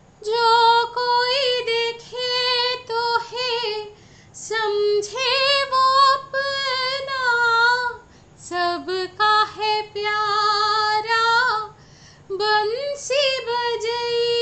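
A woman singing a Hindi song solo and unaccompanied, in long high held notes with a wavering pitch, the phrases broken by three short pauses.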